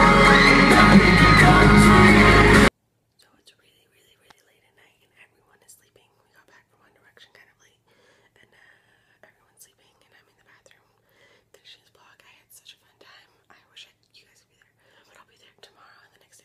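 Loud live pop concert: amplified music with a crowd, cut off abruptly just under three seconds in. After the cut, a woman whispers faintly.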